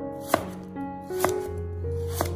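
Chinese cleaver slicing through a carrot and knocking on a wooden cutting board, two sharp cuts about a second apart.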